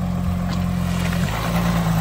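Audi Q5 SUV's engine running as the car rolls slowly away, a steady low hum that drops slightly in pitch about a second and a half in.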